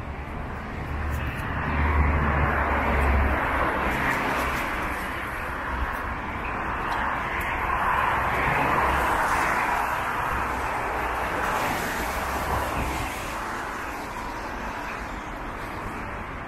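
Passing vehicle noise beside a wet city street: a low engine rumble about two seconds in, then a broad wash of sound that swells to a peak around the middle and slowly fades.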